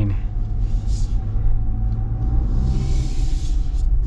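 In-cabin sound of a 2024 Jeep Wrangler Rubicon 4xe plug-in hybrid driving slowly: a steady low rumble with a faint, steady tone above it and a soft hiss about halfway through.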